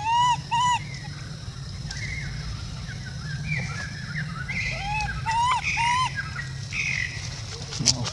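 Short arched coo calls from an infant macaque, coming in quick pairs: two at the start, then a run of them mixed with higher chirps from about four and a half to six seconds in. A sharp click comes just before the end.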